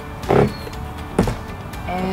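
A single plastic click, about a second in, as the latch of a caravan's outside toilet-cassette service hatch is released and the hatch swung open, over background music.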